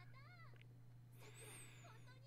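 Faint, high-pitched female voice dialogue from the anime playing in the background, with a brief shrill, noisy exclamation from about a second in. A steady low hum runs underneath.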